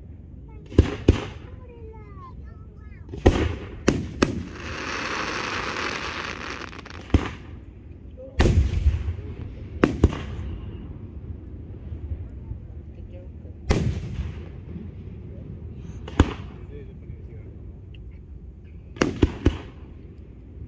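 Fireworks display: aerial shells bursting in sharp bangs every few seconds, about a dozen in all, with a quick cluster of bangs near the end. A steady hiss lasting about three seconds follows the bangs about four seconds in.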